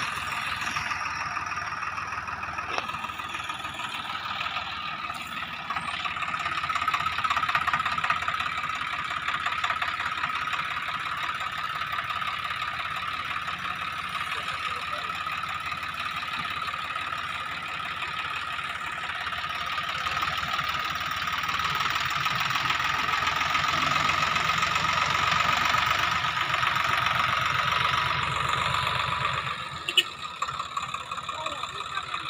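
Swaraj 744 FE tractor's three-cylinder diesel engine running steadily while it pulls a loaded trailer, growing louder twice for several seconds as the tractor nears.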